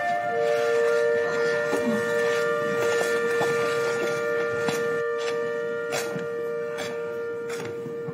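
Background score: a long held note with a sustained chord of higher tones above it, like a wind instrument, slowly getting quieter. A few faint knocks are scattered through it.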